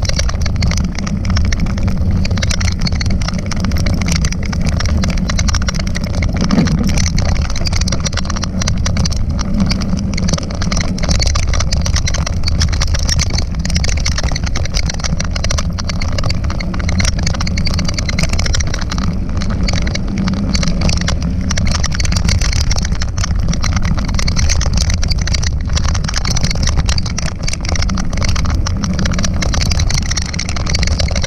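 Wind buffeting the microphone of a camera riding on a moving mountain bike, over the rolling of knobby tyres on a gravelly dirt road: a steady low rumble with a hiss on top.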